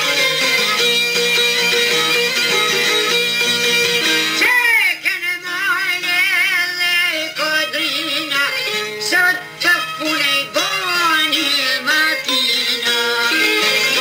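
Albanian folk song: a plucked-string instrumental passage, then from about four and a half seconds in a solo singer's line with heavy vibrato and ornaments over the plucked-string accompaniment, the instruments taking over again near the end.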